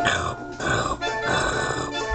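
Three growling vocal sounds, each falling in pitch, break in over brass band music.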